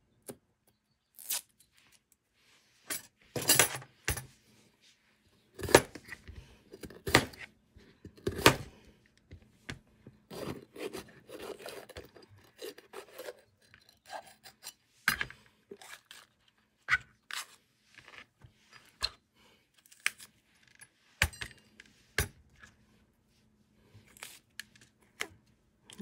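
Kitchen knife cutting a green bell pepper on a plastic cutting board: irregular sharp knocks of the blade and the pepper on the board, with short scrapes in between.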